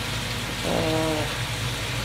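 Food frying in a pan on the stove: a steady crackling sizzle, with a short murmur of a woman's voice about a second in.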